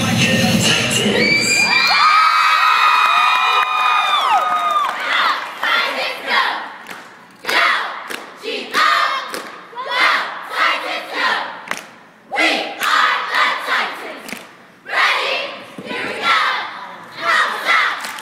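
Backing music cuts out about two seconds in, leaving a crowd cheering with long held screams. After that comes a run of short, loud shouted bursts in a rough rhythm.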